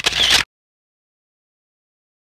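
Dead digital silence, after a short burst of dance music and voices that cuts off abruptly about half a second in.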